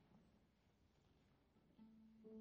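Near silence: room tone in a concert hall, then near the end a single held note sounds as a piano trio begins to play.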